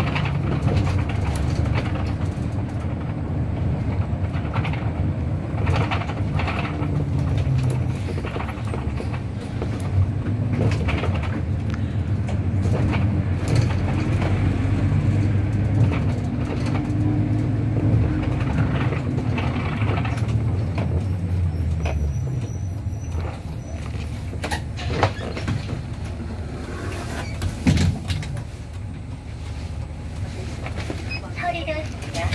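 City bus running, heard from inside the cabin: a steady low drone that shifts in pitch with speed, then drops away about two-thirds through as the bus slows, with rattles and knocks of the cabin and a sharper thump near the end.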